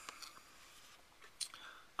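Quiet room tone with a few faint clicks and a brief soft breathy noise about one and a half seconds in.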